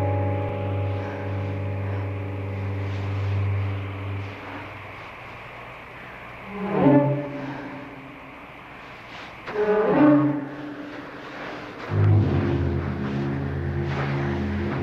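Dramatic film-score music with sustained low bowed strings, broken in the middle by two loud screams from a man, each sliding down in pitch, about three seconds apart; the low strings return near the end.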